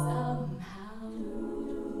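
All-female a cappella group singing a sustained chord. The lowest held note drops out about half a second in, and the chord carries on more softly.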